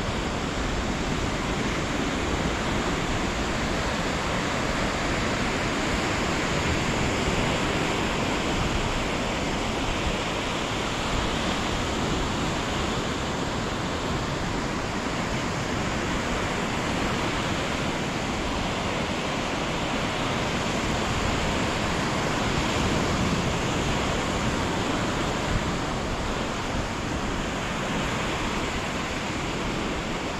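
Ocean surf washing onto a sandy beach: a steady rushing noise that swells and eases gently.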